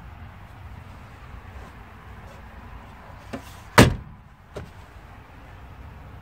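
A single sharp knock about four seconds in, with a light click just before it and a softer knock after, over a steady low rumble.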